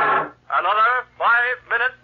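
Organ music breaks off, then a voice makes a few short sounds with strongly swooping pitch, separated by brief gaps.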